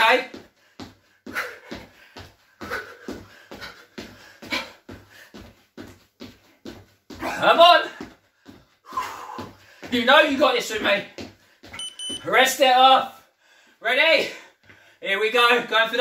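Quick, even footfalls of trainers on a wooden floor, a few a second, as a man bounces through a cardio drill. In the second half come short loud bursts of his voice, breath or shouts, and about three-quarters in a brief electronic beep.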